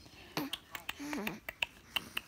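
A run of quick, sharp mouth clicks and smacks, about nine in two seconds, with a short voiced sound that falls in pitch about a second in.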